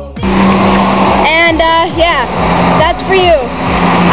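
Street traffic noise on a wet road, a steady hiss with a low engine hum, with a woman's voice over it from about a second and a half in.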